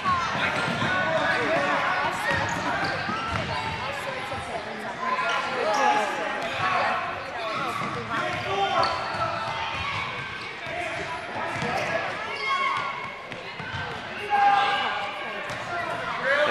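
A basketball bouncing on a hardwood gym floor, with the overlapping chatter of children and adults running through.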